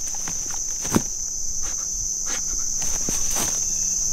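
A steady, high-pitched summer insect chorus drones, with a few soft footsteps in grass and one sharp click about a second in.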